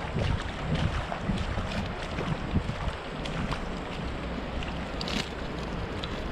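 Wind buffeting the microphone over the steady rush of shallow river water.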